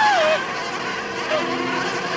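Horror-film soundtrack: a steady, buzzing drone of several held tones. It opens with a loud wailing glide that rises and then falls away within the first half second, and a brief smaller slide follows about a second later.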